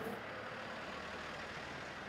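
A box delivery lorry driving past on a street: steady engine and road noise at an even level.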